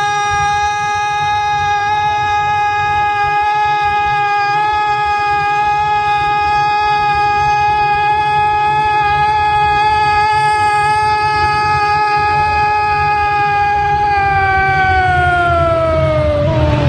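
A Brazilian radio football commentator's single long held 'gol' shout: one high, sustained note that holds steady for about fifteen seconds, then falls in pitch near the end as the breath runs out.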